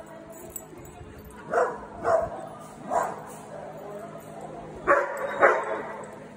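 Small dogs barking: three single barks spaced about half a second to a second apart, then two quick barks close together near the end.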